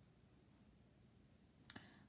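Near silence: room tone, with two faint clicks close together near the end.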